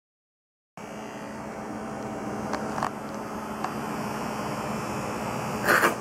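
Electric hair clippers running with a steady buzz while cutting hair close to the scalp. A short, louder sound comes just before the end.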